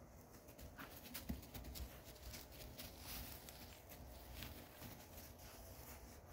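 Faint scattered rustling and crunching of loose straw underfoot as a Redbone Coonhound and a person walk over straw bales and a straw-covered floor.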